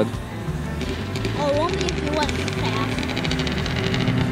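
A snowmobile with an aftermarket exhaust approaching, its engine hum growing slowly louder.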